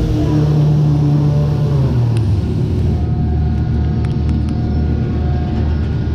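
Superbowl fairground ride's machinery humming loudly under a rushing noise; its pitch drops about two seconds in and settles into a lower steady hum, with a few light clicks near the end.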